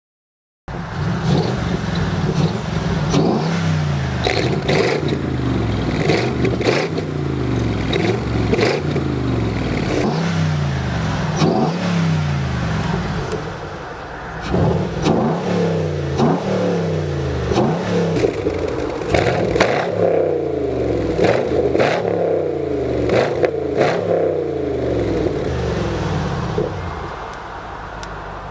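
Chevrolet Camaro 6.2-litre V8 revving repeatedly through a Vittorelli cat-back exhaust with remote-controlled valves, the intermediate silencers removed. The pitch rises and falls every second or two, with brief quieter dips around halfway and near the end.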